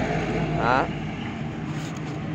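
A steady low mechanical hum in the background, with a single short spoken word near the start.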